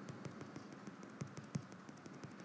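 Faint, quick, irregular taps and clicks of fingers on a tablet's glass screen, the loudest about one and a half seconds in, over a faint low hum.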